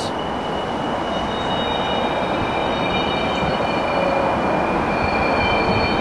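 A train passing below, a steady wash of noise that swells slightly, with several thin, high wheel squeals that start and stop.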